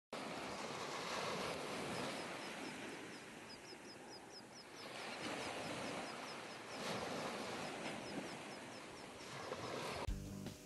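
Surf washing up a beach in slow swells, with a bird's quick, high chirps repeating about four times a second through most of the first part.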